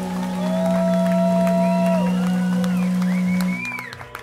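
A rock band's final held note ringing out through the amplifiers, then cutting off sharply about three and a half seconds in. Audience whistles rise and fall over it.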